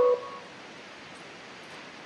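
The last notes of a descending tinkling melody die away right at the start, leaving a steady, even rush of a distant waterfall.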